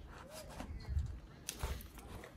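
Light handling of a paper booklet and a traveler's notebook cover: soft rustles with a couple of small taps about a second and a half in, as the booklet is fitted into the cover's pocket.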